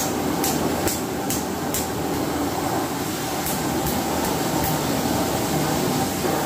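Water from a wall tap pouring steadily into a plastic tub of clothes, with a few brief swishes as garments are dropped into the tub.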